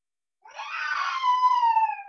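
A high-pitched drawn-out whine, about a second and a half long, falling slightly in pitch.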